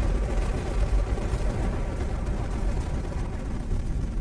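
A steady, deep rumbling drone from the documentary's sound design, laid under the CGI flight past the Moon.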